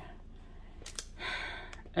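A pause with low room noise; a faint click about a second in, then a short audible breath from a man for well under a second, near the end.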